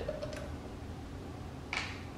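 Faint light ticks of hands handling a ceiling fan's light-kit housing and blades over a low steady room hum, with one short hiss a little before the end.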